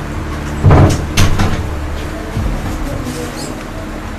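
A wooden wardrobe door knocking twice, about half a second apart, the first knock the loudest. A steady low hum runs underneath.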